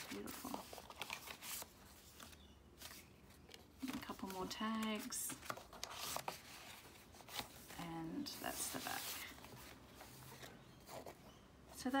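Quiet paper rustling and page handling as a handmade paper-and-fabric junk journal is leafed through and its paper tags are lifted and moved, with scattered soft crinkles and taps.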